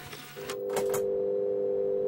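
Electronic logo sound effect: a faint hiss, then a steady electronic hum from about half a second in, with two sharp clicks about a second in.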